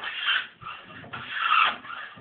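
Hand plane cutting long shavings from a wooden board, making wood curls. Two push strokes sound, the first at the start and the second about a second in.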